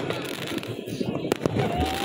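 Fireworks going off: a rapid run of sharp pops and crackles.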